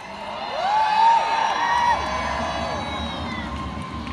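Large outdoor crowd cheering, many raised voices swelling about half a second in, loudest around a second in, then fading out near the end.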